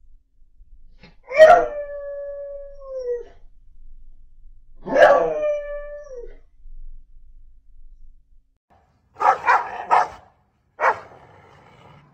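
A beagle howls twice, two long calls each held on one pitch and dropping away at the end. About nine seconds in come four short, sharp barks in quick succession.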